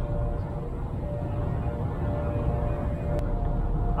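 Outdoor background noise: a steady low rumble with a faint, steady hum over it.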